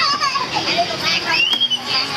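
Children playing and chattering in high voices, with one higher call that rises and falls about a second and a half in.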